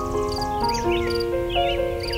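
Soft piano music playing held notes, with bird calls over it: short wavering chirps about half a second in and again near the end. A faint high chirping pulse repeats several times a second throughout.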